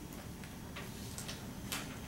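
A marker writing on a whiteboard: a handful of short, faint ticks and scratches, irregularly spaced, as the strokes of an equation go down.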